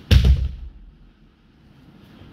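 A judoka thrown onto the tatami mats, his body landing with one heavy thud about a tenth of a second in that dies away within about half a second.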